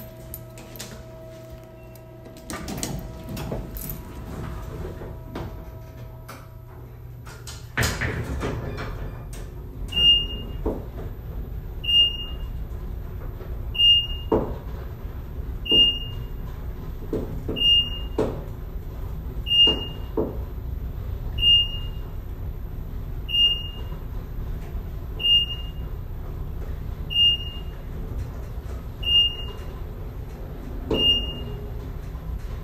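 Passenger elevator car getting under way: a steady hum, then a sudden loud jolt about eight seconds in as the car starts, followed by a low running rumble with scattered clicks and rattles. From about ten seconds on a short high beep sounds about every two seconds.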